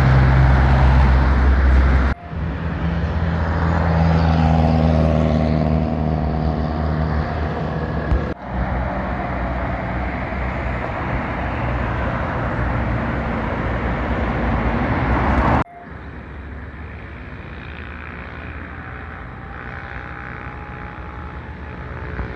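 Road traffic on a highway: engines of passing vehicles, loudest at the start with a low engine note, then steadier passing-car noise. The sound changes abruptly at several edits, and the last stretch is quieter traffic noise with a faint engine hum.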